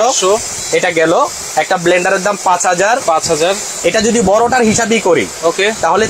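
Speech: a person talking steadily throughout, with no other sound standing out.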